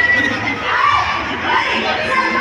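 Crowd noise: many people talking and calling out at once, their overlapping voices making a steady hubbub.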